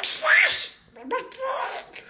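A man doing a Donald Duck voice: two bursts of garbled, raspy duck-voice talk, the second starting about a second in.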